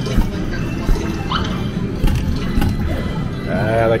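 Arcade game-room din: electronic game music and jingles over background chatter, with a few sharp thumps and short rising electronic chirps. A man's voice starts near the end.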